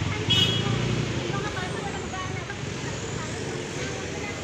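Road traffic passing close by, a vehicle rumble strongest in the first second, with one short, sharp, high-pitched beep about a third of a second in.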